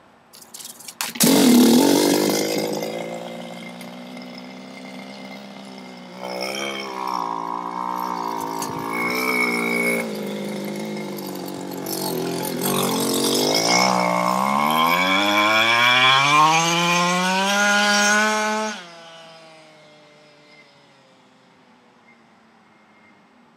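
31cc two-stroke GoPed scooter engine running and revving, coming in loudly about a second in, easing off, then rising steadily in pitch before cutting off sharply near the end and fading. Its owner notes a slight bog at the low end of the rev range.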